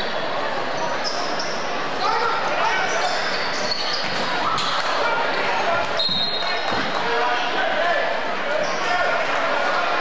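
Basketball game sound in an echoing gym: indistinct voices of players and crowd, a basketball bouncing on the hardwood floor, and brief sneaker squeaks, one plain squeak about six seconds in.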